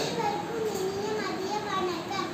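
A young girl's voice reciting aloud in long, evenly pitched phrases.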